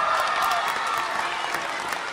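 A room of people applauding, easing off slightly toward the end.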